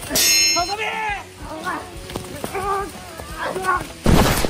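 Sword clash: a sharp metallic clang with a brief ring right at the start, followed by several short shouts from the fighters.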